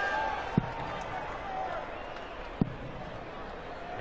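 Two steel-tip darts thudding into a bristle dartboard, one about half a second in and the next about two seconds later, over the low hubbub of an arena crowd.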